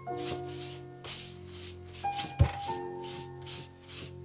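A cloth rubbed back and forth over a thin dark wooden veneer plate, in hissing strokes about two to three a second, with a single dull thump about halfway through.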